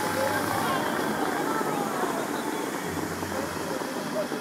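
Bellagio fountain water jets spraying high and falling back into the lake, a steady rushing of water, with faint voices over it.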